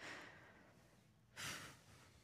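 Two faint breaths from a close-miked voice between whispered and hummed vocal lines: a soft one at the start that fades out, and a louder, short one about one and a half seconds in.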